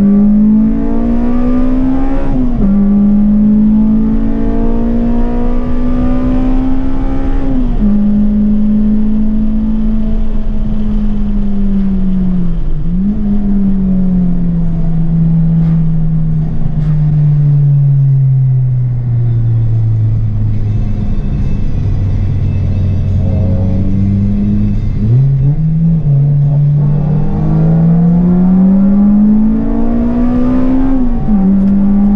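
Honda Civic Type R EP3's 2.0-litre four-cylinder engine heard from inside the cabin under hard driving: the revs climb and drop sharply through two upshifts in the first eight seconds, sink slowly to a low pitch as the car slows, then climb again strongly near the end.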